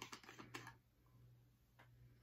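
Plastic cap being twisted off a shampoo bottle: a quick run of small clicks and ticks in the first half-second or so, then near silence.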